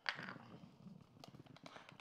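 Quiet, with a sharp click just after the start and then a few faint ticks: a small metal measuring spoon knocking against a glass spice jar while scooping out crushed red pepper.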